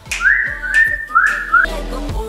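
Three short whistled notes, each rising to a high pitch, to call a pet pearl cockatiel over to the hand. Background music comes in near the end.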